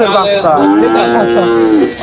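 A young bull calf mooing: one long, steady call of a little over a second.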